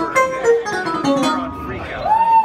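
A few loose instrument notes played on stage before the set, short held tones stepping between pitches, with voices in the room.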